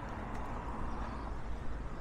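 Outdoor street ambience: a steady low hum of road traffic.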